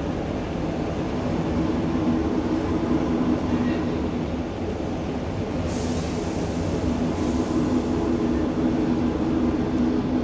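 Diesel passenger train running along the line, heard from inside the carriage: a steady rumble of wheels on rail under a droning engine note. A brief hiss comes in about six seconds in.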